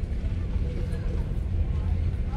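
Steady low rumble of a car's engine and tyres heard from inside the cabin as the car rolls slowly along, with faint voices in the background.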